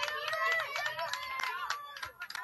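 High-pitched voices calling out continuously from the soccer field or sideline, with no clear words, mixed with scattered sharp clicks.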